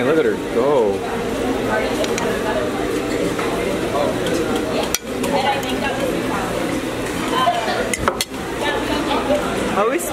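Crowd chatter in a busy dining hall, with a metal fork clinking and scraping on a ceramic plate as fruit is pushed off it, and a couple of sharp clinks.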